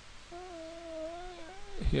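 A drawn-out, slightly wavering pitched call held for about a second, followed by a brief second one, then a man's voice begins speaking near the end.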